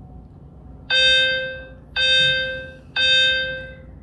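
Three electronic beeps about a second apart, each a single pitched tone that fades out, from the auto face-tracking phone holder as it locks onto a face and starts recording by itself.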